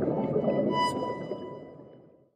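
Intro music bed with an underwater sound effect: a churning low rumble under held tones, with a brief bright ping just under a second in, fading away steadily.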